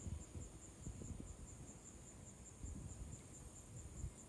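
Faint night chorus of insects, a high steady chirping that pulses about four to five times a second. Under it run irregular short low rumbles.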